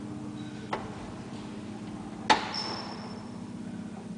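An old Flohrs traction elevator car travelling in the shaft with a steady low hum. A light click comes just under a second in, and a sharp metallic clack with a short high ring comes a little past halfway.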